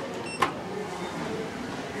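A short, high electronic beep from an Otis Gen2 lift car's push button as the '0' floor button is pressed, then a single click about half a second in. Steady low background noise follows.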